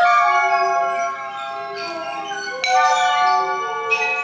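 Hanging ceramic shapes struck with clay bead mallets, several bell-like tones of different pitches ringing and overlapping. New strikes come right at the start and again about two and three-quarter seconds in.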